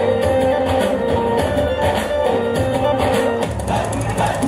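Instrumental music with held melody notes over a steady pulsing beat.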